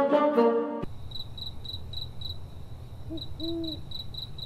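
Plucked-string comedy music cuts off about a second in and gives way to a crickets-chirping sound effect, a steady high chirp pulsing about four to five times a second over a low rumble, the stock gag for an awkward silence. An owl-like hoot sounds about three seconds in.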